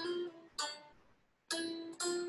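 Single notes picked slowly on a red semi-hollow electric guitar, played clean: three notes, each ringing and fading, with a pause of about half a second before the third.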